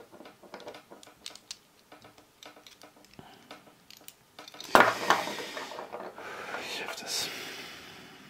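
Pieces of a Hanayama Cast Marble metal puzzle clicking and clinking lightly against each other as they are twisted. About halfway through, a louder rushing noise starts suddenly and fades over about three seconds.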